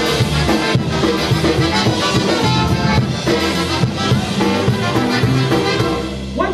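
Live polka band playing a polka with a steady dance beat: accordion, brass, bass guitar and drum kit.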